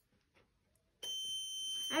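A buzzer on a breadboard starts about a second in and holds a steady high-pitched tone. It signals that the water pump has switched on because the water level in the glass is low.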